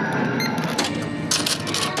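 Cash register at a checkout counter in use: a few sharp clicks, then two bursts of clinking and rattling from the cash drawer in the second half.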